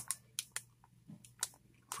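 Faint, scattered crinkles and ticks of a foil trading-card pack wrapper, a Panini Cooperstown baseball pack, being handled and turned over in the hands, with quiet between them.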